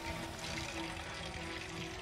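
Soft, tense background score with steady held tones.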